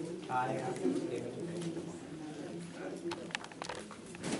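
Indistinct murmured conversation among several people in a small meeting room, with one voice briefly clearer just after the start. Paper rustling and a few light clicks come near the end as ballots and papers are handled on the tables.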